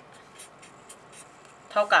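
Marker pen writing on paper: a few soft, short scratching strokes as letters are drawn, with a voice starting near the end.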